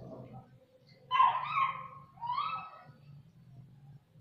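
An animal's two short, high-pitched whining cries, the second rising in pitch, over a faint steady low hum.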